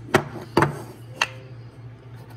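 Wooden calendar blocks being turned and set down on a countertop: three sharp wooden knocks within about a second, over a steady low hum.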